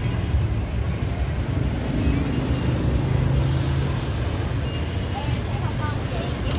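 Antique sewing machine stitching: a steady, fast, low clatter with no break.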